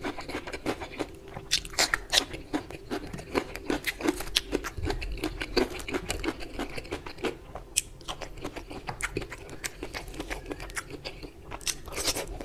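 Close-miked chewing, with many sharp crunches and wet clicks of a mouthful of crisp cucumber slice and curried rice being chewed.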